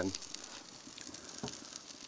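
Oak and manzanita wood burning in open flames in a Weber kettle grill: faint crackling with a few small pops, one a little sharper about one and a half seconds in.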